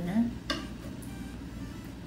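A spoon clinks once against a cooking pot as it scoops out onions, a single short click, with only a faint low background after it.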